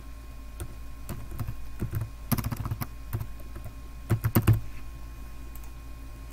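Typing on a computer keyboard: scattered key clicks with two quick runs of keystrokes, about two and a half and four seconds in.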